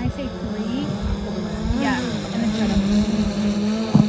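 DJI Phantom 4 Pro quadcopter hovering, its propellers giving a steady buzzing hum that grows a little louder in the second half.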